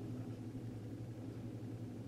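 Quiet, steady low electrical hum with a faint hiss, unchanging throughout.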